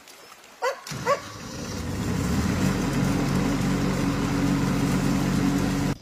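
Engine of a portable water pump running steadily, building up over about a second before settling, as it draws water from the stream through a hose. Two short high-pitched calls come in the first second.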